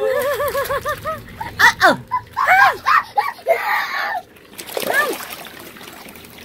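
Water splashing in a shallow inflatable kids' pool full of plastic balls, mixed with a child's high-pitched wordless vocalising: a quick run of short calls in the first second, then more cries and squeals.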